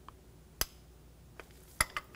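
A few short, sharp metallic clicks from a torque wrench on a spark plug socket as a new spark plug is tightened to 22 ft-lb: one about half a second in, a faint one, and another near the end.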